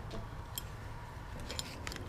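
Hands handling paper money and a wallet: faint rustling with a few small clicks, a single one about half a second in and a short cluster near the end.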